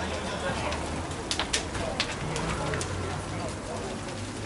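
Burning house fire with scattered sharp cracks and pops from the burning building, over a steady low hum.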